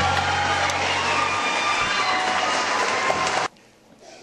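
Live concert audio: a held low orchestral chord ends a little over a second in, leaving a steady noisy wash of audience sound that cuts off suddenly about three and a half seconds in.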